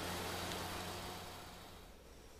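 Rice combine harvester's engine running with a steady low hum, faint and fading out toward the end.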